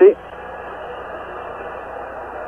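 Steady crowd noise from a packed football stadium, heard through a narrow-band television broadcast.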